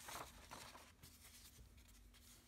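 Near silence: faint rustling of paper being handled, a calendar page and a card card brushed against a cutting mat, barely above room tone.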